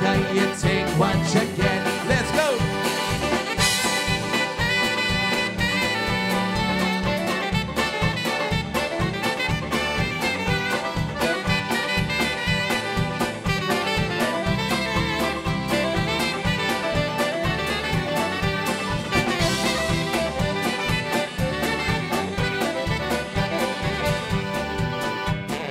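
A live polka band playing an instrumental passage between verses: accordion, saxophones and drums over a steady beat.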